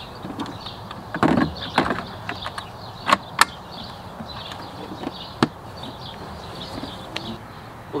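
Hard plastic clicks and knocks as the battery compartment lid of a Ryobi 40V HP electric mower is opened and a 40V lithium battery is slid into its track and pressed home: a few separate sharp clicks, two of them close together a little after three seconds in.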